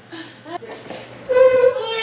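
Wordless vocal sounds: short rising calls early, then a louder held, fairly high-pitched note about a second and a half in that falls away.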